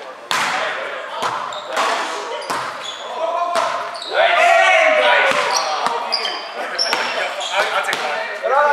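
Volleyball rally in a gym: a string of sharp smacks of hands and arms striking the ball, echoing in the large hall, with players shouting to each other and short high squeaks of shoes on the wooden floor.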